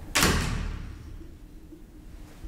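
A door shutting with a bang just after the start, the sound dying away over about half a second, then a low steady hum.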